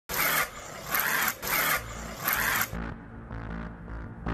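A honey badger giving four harsh, raspy hissing snarls in quick, uneven succession. A music track then comes in with a steady low beat.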